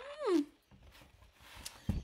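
A woman's short admiring 'mm' hum, rising then falling in pitch, followed by quiet and a soft low thump near the end.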